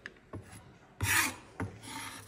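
Kitchen knife scraping across a bamboo cutting board, gathering chopped onion, with a few light knocks of the blade on the board. The loudest scrape comes about a second in, and a shorter one follows near the end.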